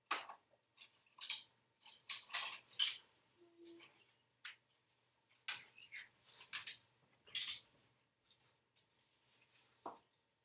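Paper and double-sided tape being handled at desks: irregular short, scratchy rustles and tears, coming in quick clusters with brief gaps between.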